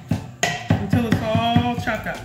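Chef's knife rapidly chopping raw chicken livers on a wooden cutting board: quick, even strikes of about five or six a second. Music with a singing voice plays over it.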